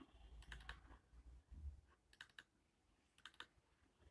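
Faint computer mouse clicks in three quick groups of two or three clicks each, about a second apart.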